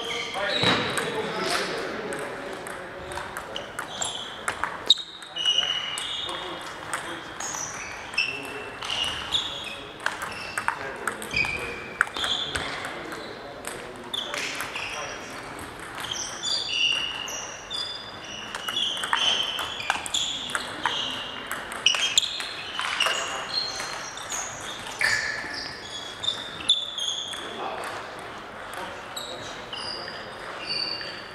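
Table tennis ball being played in rallies: short sharp pings and clicks as it strikes the bats and the table, coming in irregular runs throughout.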